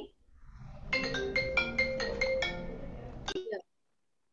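A short ringtone-style electronic melody of about eight quick, bright mallet-like notes, ending with a click and then cut off abruptly.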